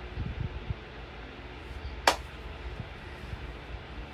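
Phone microphone picking up low handling rumble and fabric rustle as a long black dress is held up close, with a cluster of soft thumps in the first second and one sharp click about two seconds in.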